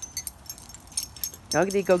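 Small metal dog collar tags jingling in quick, irregular clinks as two small dogs run and tussle over a toy.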